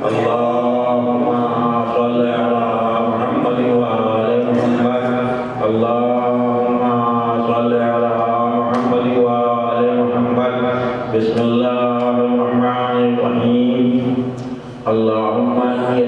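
A man's voice chanting a recitation through a microphone and loudspeakers, in long drawn-out melodic phrases, with short breaks about five and a half seconds in and again near fourteen and a half seconds.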